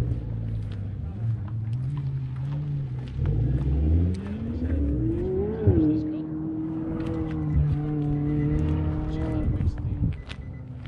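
A car engine revs, climbing steadily in pitch for a few seconds, dropping sharply about halfway, then holding a steady pitch until it cuts off near the end.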